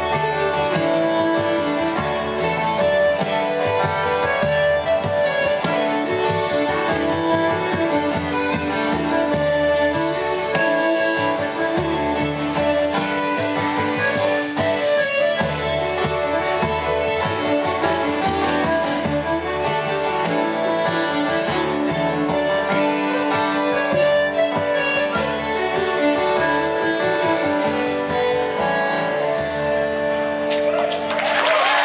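Live Irish folk music in an instrumental passage: an acoustic guitar strummed and a bodhrán beaten with a tipper keep a steady rhythm, with a melody line moving over them.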